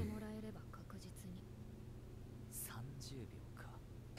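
Faint, low-volume voices: Japanese anime dialogue played quietly in the background, in short broken phrases.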